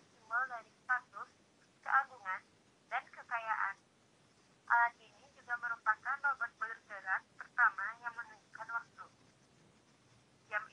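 Speech only: a voice talking in short phrases with brief pauses, sounding thin with no low end.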